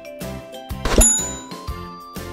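A bright bell 'ding' sound effect strikes about a second in, with high ringing tones fading after it, over light background music with a regular beat.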